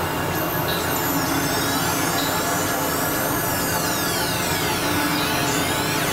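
Experimental electronic synthesizer music: a dense, noisy drone with many high pitch glides sweeping up and down across each other, and short high blips recurring every second or so, at a steady level.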